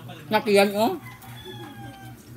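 A rooster crowing: one loud, short crow in the first second, then a fainter drawn-out call.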